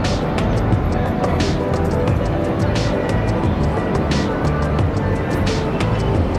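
Background music with a steady low pulse, and a bright swish that recurs about every one and a half seconds.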